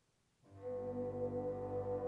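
Wind ensemble coming in after a near-silent pause, about half a second in, with a held full chord in which the brass stands out, growing slightly louder.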